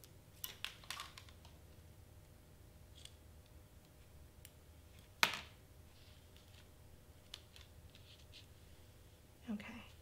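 Quiet handling sounds of a roll of mini glue dots and cardstock: a few soft clicks near the start, one sharp tap about five seconds in, then scattered faint ticks. A brief murmur of voice comes near the end.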